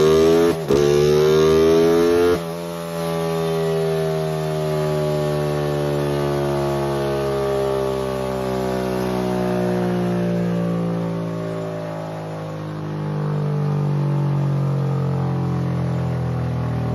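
Yamaha Exciter 135 single-cylinder four-stroke, bored to 62 mm and fitted with an FCR 28 carburettor and AHM exhaust, running at raised revs. About half a second in, the revs dip and catch. A little after two seconds in they drop sharply to a steady idle that slowly drifts lower.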